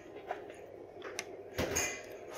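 Quiet kitchen hum with a couple of faint clicks, then a door bumping open about a second and a half in.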